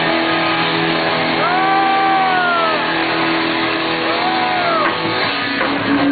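Punk rock band playing live, electric guitars holding a sustained chord. Over it come two long wails that rise and fall in pitch, the first about a second and a half in, the second shorter, near the end.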